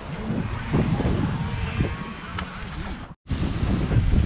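Wind buffeting the microphone of a camera worn high up in a palm tree: a steady low rumble, with faint voices in the background. The sound cuts out for an instant just after three seconds in.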